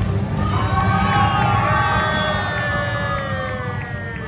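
Crowd cheering and shouting, with music of long held notes playing over it.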